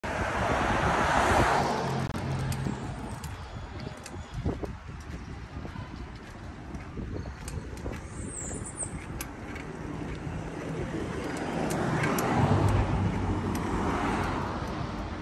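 Road traffic passing beside a bicycle on a city street: one vehicle passes loudly in the first couple of seconds and another builds up and passes near the end, with a steady lower road hum and a few light clicks between.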